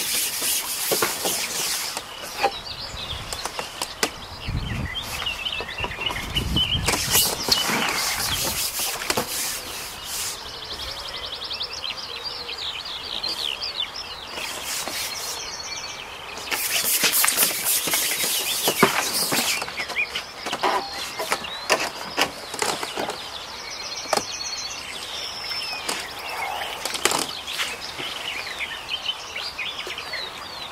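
Small songbirds chirping and singing over an open-air background. Three loud bursts of rustling hiss, each lasting a couple of seconds, and scattered sharp clicks break in along the way.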